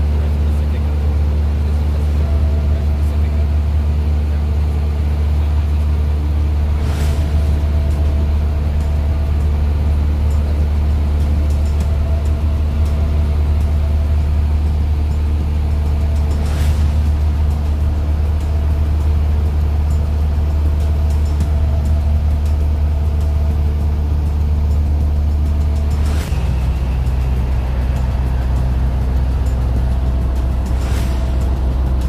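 Small propeller plane's engine droning steadily, heard from inside the cabin, with a sudden shift in its low tone near the end.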